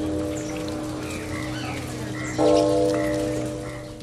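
A deep temple bell rings and slowly fades, then is struck again about two and a half seconds in and rings out. Small birds chirp over a steady hiss of outdoor noise.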